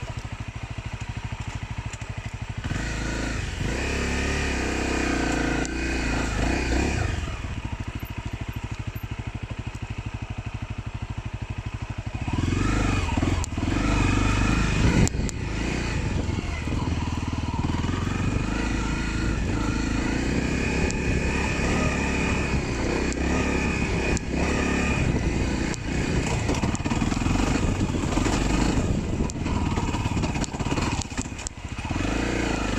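Dirt bike engine running steadily at low revs, then about twelve seconds in it gets louder and uneven, the revs rising and falling as the bike is ridden along.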